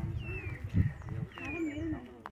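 A bird giving short descending whistled calls, three of them about a second apart, over low voices of people talking.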